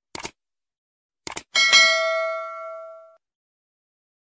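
Subscribe-button sound effects: a short mouse click, another click about a second later, and then at once a bell ding with several ringing tones that fades out over about a second and a half.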